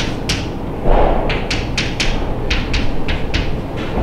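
Chalk on a chalkboard as the board is written on: a quick, irregular run of short, sharp taps and scrapes from the chalk strokes, with a duller, louder knock about a second in.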